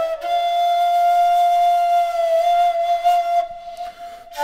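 Homemade PVC kaval, an end-blown rim flute, playing one long held note with an airy edge, briefly broken just after the start and wavering slightly in pitch, then fading away near the end.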